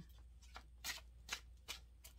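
A tarot deck shuffled by hand: faint, with a few brief card snaps and taps spread over two seconds.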